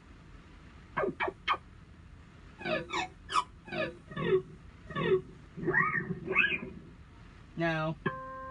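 Sampled guitar fret noises played from the keys of a Korg Pa-series arranger keyboard: a run of short string squeaks and finger-slide glides, mostly rising, a few arching up and down, in small clusters.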